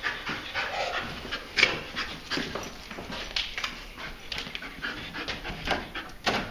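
Explosive-detection dog panting as it searches, in quick, irregular breaths.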